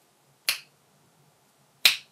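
Two sharp finger snaps, about a second and a half apart.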